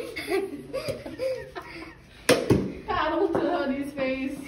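Indistinct voices and laughter, with a single sharp impact a little past halfway through, followed by a louder voice.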